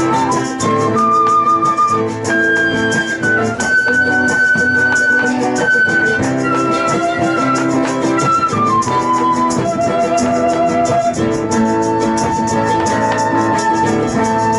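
Live Andean-style folk band playing: a flute carries the melody in long held notes that step upward, then back down, and settle on one held note near the end, over steady strummed acoustic guitars.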